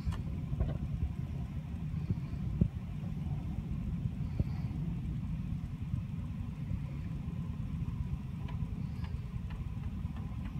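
Wind rumbling on the phone's microphone outdoors, with a few faint clicks from the bottle and balloon being handled.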